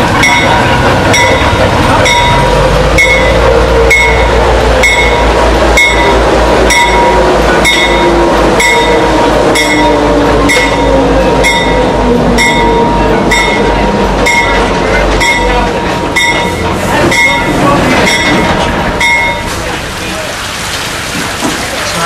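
GE 44-ton diesel locomotive pulling passenger coaches into a station, its bell ringing steadily at a little under two strokes a second until it stops about 19 seconds in. The diesel's low rumble is strong while the locomotive passes and drops away about 15 seconds in, leaving the coaches rolling by.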